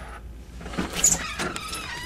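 Puppies yipping and whining behind a door, with clicks and rustling as the door is opened, over a low steady hum.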